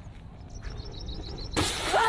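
Flames flaring up from a grill pan: a low steady outdoor rumble, then about one and a half seconds in a loud rushing burst that lasts about half a second.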